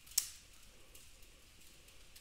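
A single sharp computer-keyboard keystroke just after the start, the Enter key running a typed command, followed by faint room tone.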